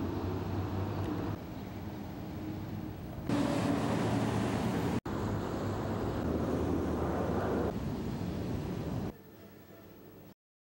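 Outdoor city ambience: a steady rumble of distant traffic with wind on the microphone. The level changes abruptly several times and drops out for an instant about five seconds in; the last second is much quieter.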